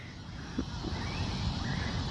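Quiet outdoor background noise: a low, steady rumble with no distinct event.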